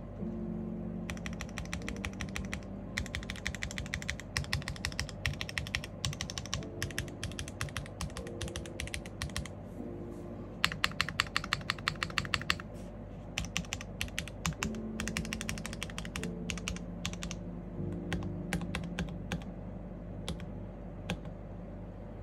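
Typing on an IRON165 R2 custom mechanical keyboard with stock WS Red linear switches in a polycarbonate plate, gasket-mounted, with GMK keycaps. Keystrokes come in rapid bursts with short pauses, with a run of louder, evenly spaced strokes about eleven seconds in.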